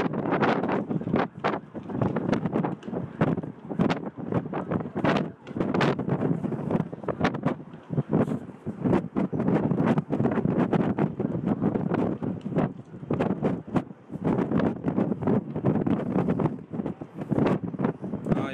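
Wind buffeting a phone's microphone outdoors: a loud, gusty, crackling rumble that rises and falls irregularly throughout.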